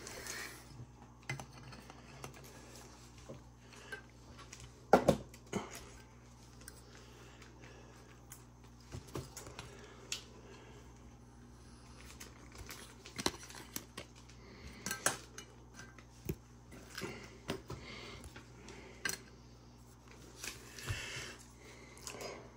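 Baseball trading cards being handled at a table: scattered light clicks, taps and rustles, with a sharper click about five seconds in.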